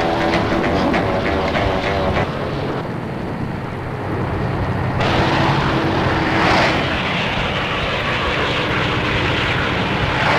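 Cartoon soundtrack car-engine effect: a steady motor drone, with a rushing noise that swells and fades about six and a half seconds in, like a car speeding past.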